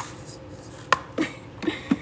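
Loose rhinestones poured from a plastic scoop into a plastic tray, then a few separate clicks and light taps of stones and scoop.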